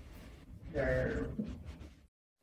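A man's voice making one drawn-out hesitation sound, a held "uhh", starting about half a second in and lasting under a second, over quiet room tone.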